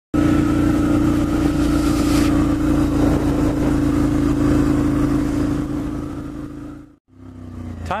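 Motorcycle engine running at a steady pitch while riding, with wind rush; it fades and cuts off about seven seconds in, and a man's voice begins at the very end.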